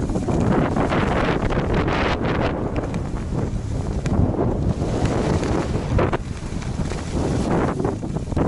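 Wind buffeting the camera's microphone while skiing downhill at speed, a steady low rumble, with skis hissing and scraping on packed groomed snow that surges briefly during turns.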